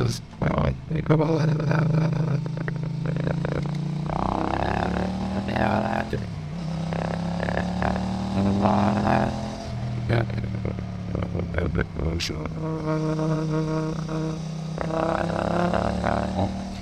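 Motorcycle engine and riding noise run through Adobe Podcast's AI speech enhancement, which renders it as wordless, human-like vocal droning that slides slowly up and down in pitch. Near the end one voice-like tone is held steady for about two seconds.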